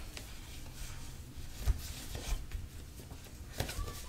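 Faint handling of tarot cards: a few soft taps and rustles over a low, steady room hum.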